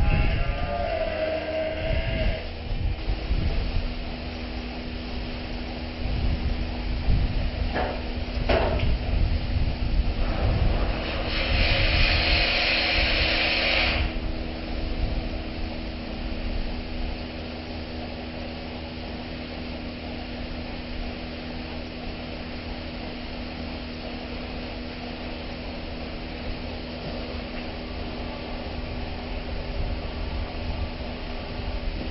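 Steady machinery hum with several held tones over a low rumble, with irregular low knocks and handling noise in the first half and a burst of hissing noise about eleven seconds in that stops about three seconds later.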